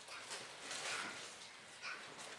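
Faint room tone in a hall, with a brief faint high-pitched sound near the end.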